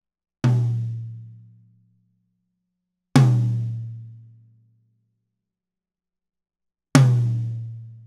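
Three single drum hits a few seconds apart, each a sharp strike with a low pitched tone that rings out over about a second and a half. The drumheads are muffled with cymbal felts held down by gaffer's tape, which lie on the head and shorten the ring.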